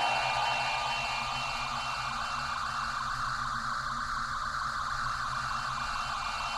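Dance music breaks off at the start, leaving a steady hiss with a faint low hum.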